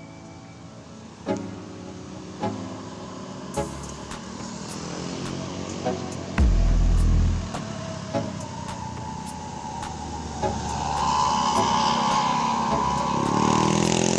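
Road traffic on a sharp bend: cars and a motorcycle pass, then a Budiman coach approaches near the end, its engine growing louder with a steady whine. A brief low rumble comes about six seconds in.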